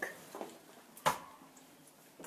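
A quiet room with one brief knock about a second in and a fainter tap near the start.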